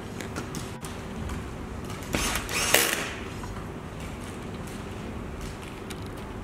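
A cordless electric screwdriver runs for about a second, starting about two seconds in, driving a screw that fixes an LED driver's clip into an aluminium profile, with a sharp peak just before three seconds as the screw seats. A faint steady hum lies underneath.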